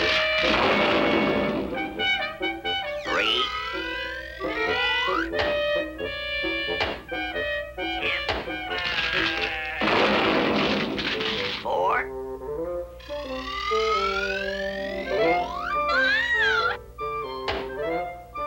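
Cartoon orchestral score with sound effects of felled trees: two long crashing noises, one at the start and one around nine to eleven seconds in, with whistle-like sliding glides rising and falling in between.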